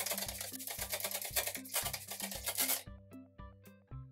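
Water being sprayed from a spray bottle, a dense hiss that stops about three seconds in, over background music with a repeating bass line.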